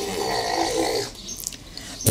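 A short, rough, breathy vocal sound lasting about a second, then fading.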